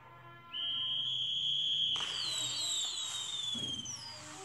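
A metal whistle blown in one long, shrill, steady note starting about half a second in. About two seconds in a sudden hissing rush of fireworks joins it, with several falling whistling tones.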